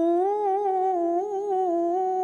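A Quran reciter's voice holding one long, sustained vowel in melodic tajweed chanting, with small ornamental wavers in pitch.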